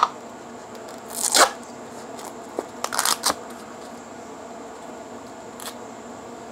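Plastic crinkling and tearing as the seal is picked off the top of a new seasoning shaker, in short bursts: a sharp click at the start, the loudest tear about a second and a half in, and another cluster about three seconds in.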